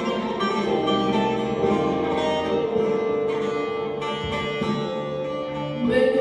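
Instrumental passage of Turkish folk music played on bağlamas (long-necked plucked lutes) and other plucked strings, a run of ringing sustained notes. Voices come in right at the end and the music grows louder.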